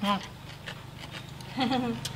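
Speech only: a woman's short spoken word at the start and another brief vocal sound near the end, over a faint steady low hum.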